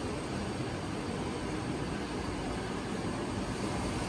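Steady machine noise of running laboratory instruments: an ICP mass spectrometer and its laser ablation system, with their pumps and ventilation, in mid-analysis.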